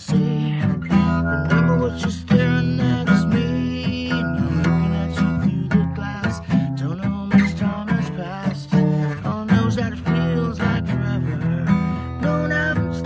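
Acoustic guitar strummed in steady chords, with a man singing along.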